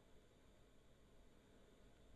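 Near silence: a pause in a voice recording after noise reduction, with the background fan noise gone and only a faint even hiss left.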